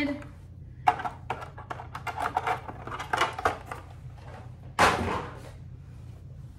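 Clear plastic packaging tray being handled and pulled apart: a run of short crackles and clicks, then a louder rustling burst about five seconds in.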